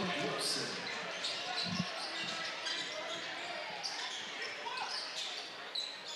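Basketball dribbled on a hardwood gym court, with one clear low bounce about two seconds in, over a steady murmur of the crowd in a large hall.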